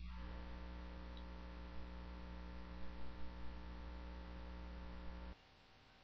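Steady electrical mains hum with a faint hiss, cutting off suddenly about five seconds in.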